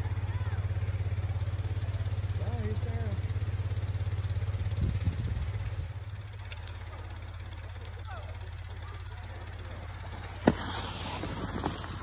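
Small twin-cylinder Wisconsin engine driving a rope tow, running with a steady low drone. About halfway through the drone drops to a much fainter level, and a sharp click comes near the end.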